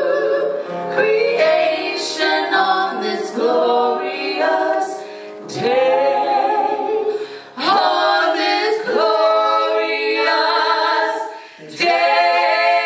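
Women singing a gospel song into microphones, two voices together, with long held notes and brief breaks between phrases.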